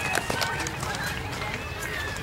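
Distant voices calling out and chattering across an open ball field, with a few faint knocks.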